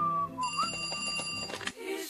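Soundtrack of a cartoon Vine clip: a wavering whistled tune over music, then a high, steady electronic ring from about half a second in. The ring lasts about a second and the audio cuts off abruptly near the end.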